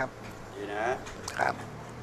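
Two short cries: the first wavers in pitch just under a second in, and the second is higher and sharper about a second and a half in.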